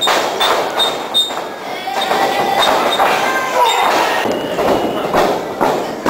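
Repeated thuds of pro wrestlers striking each other and hitting the ring, with voices shouting over them.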